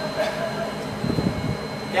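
Steady machinery hum of an underground fountain pump room, pumps and water piping running, with a brief low rumble about a second in.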